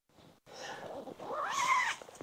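Nylon tent fabric rustling as it is handled, then one short, high squeal that rises and falls near the end.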